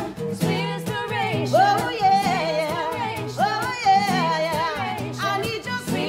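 Women singing a melody together to strummed acoustic guitars.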